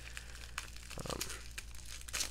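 Plastic bubble wrap crinkling and crackling in a quick run of small irregular clicks as hands unwrap it.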